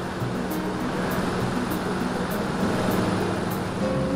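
Background music over a steady mechanical running noise, fitting an industrial tufting machine stitching yarn into turf backing.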